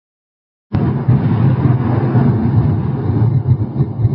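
Cinematic rumble sound effect of a channel intro: a loud, low rumble that starts abruptly under a second in, after silence.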